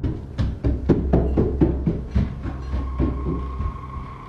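Footsteps thudding quickly and unevenly on a wooden staircase; the steps thin out and stop near the end. The person filming is alone in the house and takes them for a ghost.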